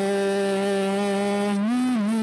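A man singing one long held note in a worship song, with piano accompaniment. He scoops up into the note and steps up in pitch near the end.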